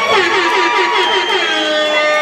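Crowd cheering, with several long held whoops overlapping.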